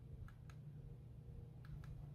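Near silence: a faint low hum with four faint short clicks, two about half a second in and two near the end.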